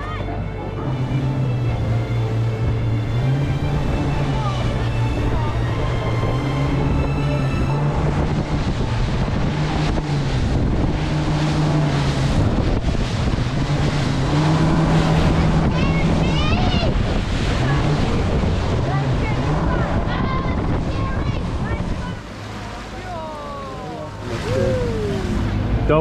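Outboard engines of a rigid inflatable dive boat running under way, their pitch rising and falling with the revs, over rushing wind and water. The engine sound drops back near the end, when voices come in.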